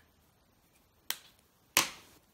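Two sharp clicks from a brush pen being handled, the second louder, about two-thirds of a second apart.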